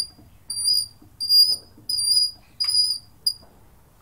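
Garden tap handle squeaking as it is wound open: five short, high squeaks over about three seconds. The dry tap spindle needs lubricating.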